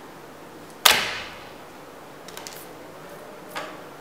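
A single sharp finger snap about a second in, the cue for the vanish that leaves one card in the hand, followed by a couple of faint clicks of cards being handled.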